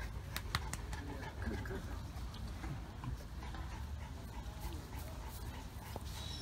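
Great Danes on leash, an adult and a puppy, making faint dog sounds, with a few sharp clicks about half a second in over a steady low rumble.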